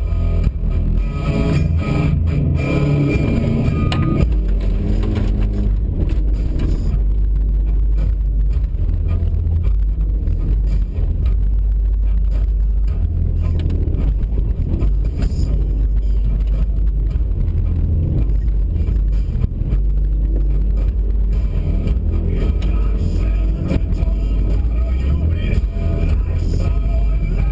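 Subaru WRX's turbocharged flat-four engine and road noise heard from inside the cabin during a rallycross run on snow: a loud, steady low rumble with scattered ticks and knocks, after background music fades out in the first few seconds.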